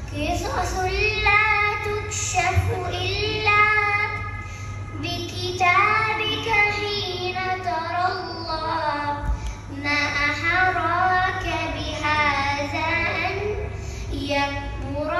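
A young girl singing an Arabic nasheed solo, with no instruments, in long held notes that bend and glide in pitch, with short breaks between phrases.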